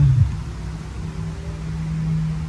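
A steady low-pitched hum holding one note, over a faint low rumble.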